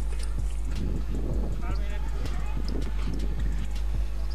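Live sound from a boxing bout: boxers' footsteps and shuffling on the ring floor with scattered knocks and glove thuds, faint voices, and a steady low hum.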